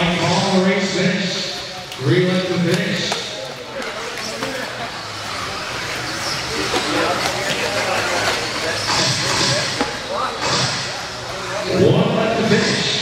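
Electric 2wd modified-class RC buggies running on an indoor dirt track, their motors and tyres a hiss that swells a few times as they pass, echoing in a large hall. A PA announcer talks over it in the first few seconds.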